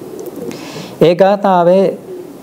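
A man's voice: a pause of about a second with only faint background sound, then one drawn-out spoken word.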